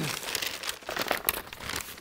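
A parts package crinkling and rustling in a steady run of small crackles as it is handled, with a single cough right at the start.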